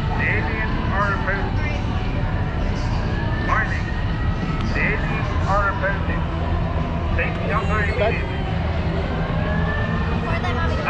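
Outdoor background: a steady low rumble with faint, distant voices chattering now and then.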